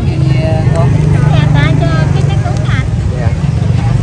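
A motor running steadily close by with a low, even hum, the loudest sound here, while people talk over it.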